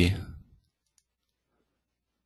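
A man's word trailing off, then near silence with a faint click about a second in.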